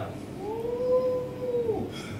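A single high, held vocal note from one person, like a drawn-out 'ooh', lasting about a second and a half and rising slightly before it falls away.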